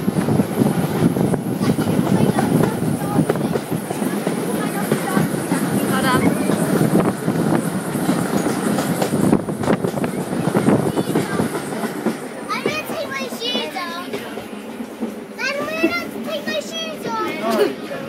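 Heritage railway carriage running along the line, heard at an open window: rushing air and a dense, fast rattle of wheels and coachwork. From about two-thirds of the way through, children's high-pitched shouts and squeals come over it in two bursts.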